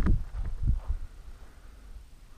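Tail end of a hand-thrown discus launch of a glider: wind buffeting and the thrower's footfalls, with a few thumps, dying away after about a second to a low hiss.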